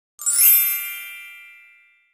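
A single bright ding sound effect, made of several high ringing tones, that starts a moment in and rings away over about a second and a half. It works as a transition chime between slides.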